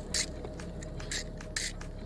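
A steel blade scraping plastic off a car door handle in three short strokes.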